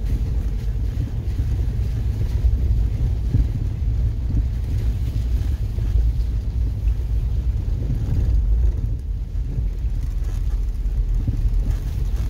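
A vehicle's engine and tyres on a gravel road, heard from inside the cabin as a steady low rumble.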